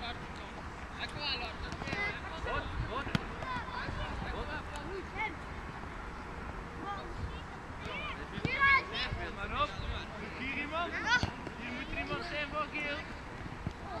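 Children's high-pitched voices shouting and calling out during a youth football game, louder in clusters in the second half. One sharp knock comes about three seconds in.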